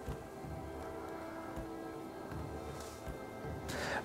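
A steady electrical buzz, several even tones held without change, with soft low thumps underneath.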